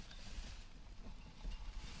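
Grass and sedge stalks rustling and snapping faintly as hands push through them, over a low, uneven rumble of wind or handling on the microphone.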